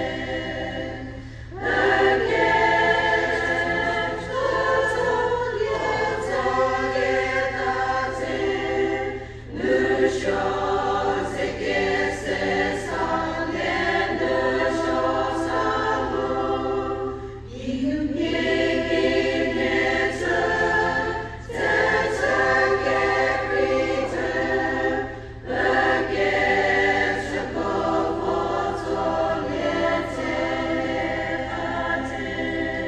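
Women's choir singing a hymn in phrases, with brief pauses for breath between them.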